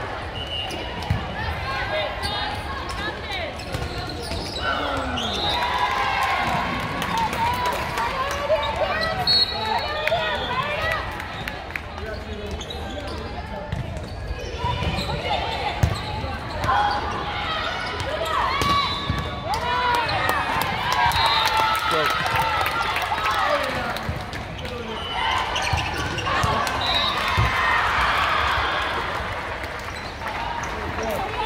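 Volleyball hits during an indoor rally: sharp smacks of the ball off hands and arms, the loudest about halfway through, over a steady murmur of players calling and spectators talking.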